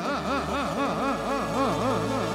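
Party music: a synthesizer note warbling up and down in pitch about four times a second over a held low bass note.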